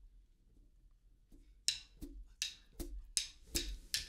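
Drummer's count-in: a run of sharp, quiet wooden drumstick clicks in steady time, starting a little under two seconds in, about three a second.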